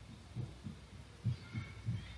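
Room tone of an old lecture recording during a pause in the talk: a low steady hum with several faint, short, low thumps scattered through it.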